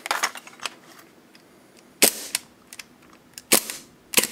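Gas blowback airsoft pistol (a Tokyo Marui Hi-Capa build with an Airsoft Masterpiece slide) firing two sharp shots, about two and three and a half seconds in, after a few lighter clicks in the first second. Its gas is running low.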